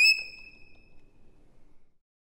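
Solo violin holding its last high note with vibrato. The bow stops just after the start and the note dies away in the room within about half a second. Faint room tone follows, then cuts to silence near the end.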